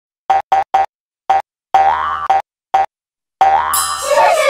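Cartoon-style boing notes of a channel intro jingle: three quick bouncy notes, a pause, a fourth, then a longer note, another short one, and a long note near the end that leads into the intro music.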